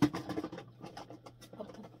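Plastic bronzer compacts clicking and knocking against one another and the drawer as they are squeezed back into a drawer, a string of small irregular clicks, with a short low hum at the very start.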